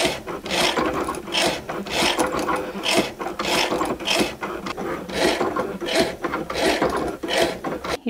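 Cricut Maker's engraving tip scratching into metal blanks, in rasping strokes about twice a second, over the steady hum of the machine's carriage motors.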